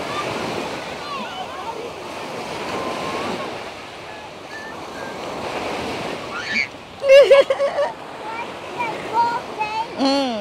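Small waves breaking and washing up onto the sand at the water's edge, a steady surf hiss. About seven seconds in, a high voice cries out loudly and briefly over the surf, with a few fainter vocal sounds near the end.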